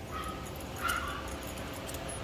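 A young puppy gives a short, faint whimper about a second in.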